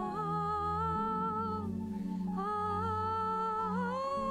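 A woman singing a slow worship song into a microphone, holding two long notes with a short break about halfway, over a soft, sustained low accompaniment.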